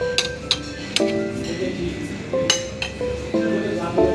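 Metal spoon and fork clinking against a plate of steamed momos, a few sharp clinks over background music of held notes.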